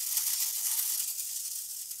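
Battery-operated Haji tinplate toy helicopter running its noise-making mechanism, a steady high hiss that eases slightly toward the end.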